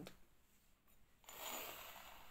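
A soft brushing, scraping noise starting about a second in as a hand takes hold of a small engraved metal lidded bowl on a tabletop. Otherwise near silence.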